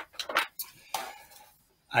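Plastic docking stations and their cables being handled at a desk: a few sharp clicks and knocks in the first half second, then fainter scraping and rustling.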